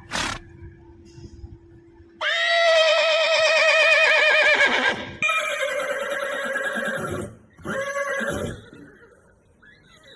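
A horse whinnying: one long, loud whinny with a quavering pitch, followed by two shorter ones.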